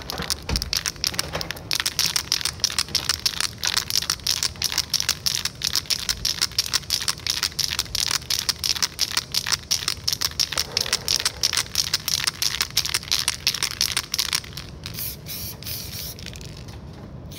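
Aerosol spray paint can sprayed in a rapid series of short hissing bursts, several a second, as the nozzle is flicked on and off to lay down quick strokes. The bursts stop shortly before the end.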